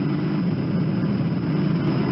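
A steady, low engine drone with no change in pitch or level.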